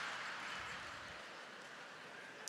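Live audience laughing and clapping after a punchline, a soft wash of sound that slowly dies away.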